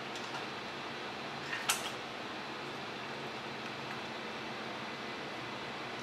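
Quiet steady fan-like hum, with one sharp click about one and a half seconds in.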